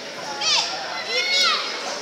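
Two high-pitched shouts from children's voices, one about half a second in and a longer one near the middle, over the steady chatter of a crowd.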